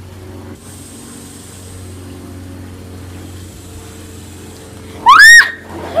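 A steady low hum, then about five seconds in a loud, short, high-pitched scream from a girl as flour is dumped over her head.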